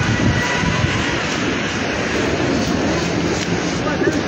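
Heavy rain falling on a wet street: a steady, even rushing noise with no breaks.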